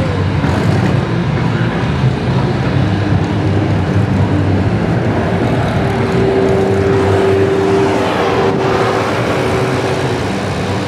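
Unmuffled demolition derby car engines running loudly in a steady rumble. About halfway through a steady whining tone joins in and holds, and a single sharp knock sounds near the end.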